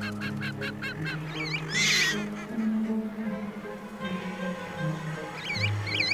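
Guillemot chick calling over orchestral music with sustained low notes: a quick run of high chirps in the first second, a louder, harsher call about two seconds in, and a few more short chirps near the end.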